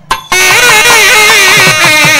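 Two nadaswarams, long South Indian double-reed temple pipes, playing an ornamented melody together with sliding pitch bends. The melody breaks off briefly right at the start and comes back in a moment later.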